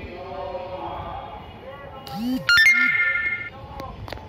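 A steady high-pitched beep lasting about a second, starting about two and a half seconds in, preceded by a sharp click.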